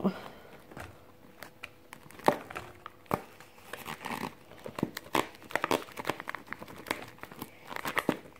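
Sliced mushrooms being added by hand into a metal bowl on a kitchen scale: irregular soft taps and rustles as the pieces drop in and are handled.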